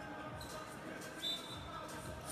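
A basketball dribbled a few times on a hardwood gym floor, faint thuds, with a thin high squeak about a second in.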